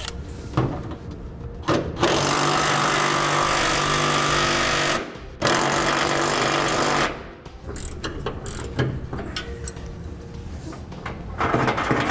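Cordless power driver spinning lock nuts up onto U-bolts under a truck. It runs steadily for about three seconds starting about two seconds in, stops briefly, then runs again for about a second and a half. After that come light metallic clicks of a wrench working the nuts.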